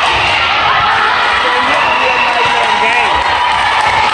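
A crowd of spectators in a gymnasium talking, shouting and cheering over one another, loud and continuous.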